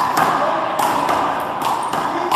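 A rubber handball struck by hand and rebounding off the front wall and floor during a rally: several sharp smacks spread over two seconds, ringing briefly in the reverberant indoor court.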